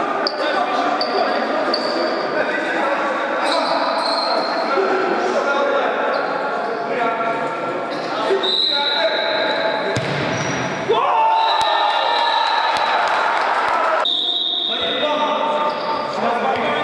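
Indoor futsal game in a large, echoing sports hall: the ball being kicked and bouncing, short high squeaks of sneakers on the court floor, and players shouting to each other.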